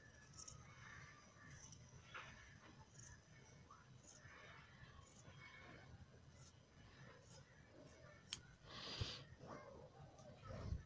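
Faint snips of large tailoring scissors cutting through cotton blouse fabric, roughly one cut a second. A brief louder rustle of the fabric comes near the end.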